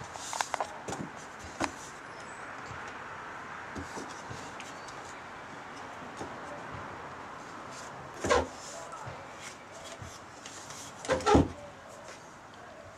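A few light taps of a baby's hands on a small wooden slatted table in the first two seconds, over a faint steady background. Two short voice sounds come about eight seconds in and again near the end.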